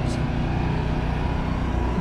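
A steady low mechanical hum with faint even tones and no change in level.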